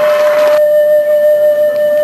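A steady high tone held at one unchanging pitch, with a fainter higher tone joining it about half a second in; under it a crowd hubbub that falls away at the same point.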